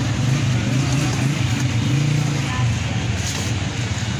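A steady, low engine hum of street traffic, with indistinct voices mixed in.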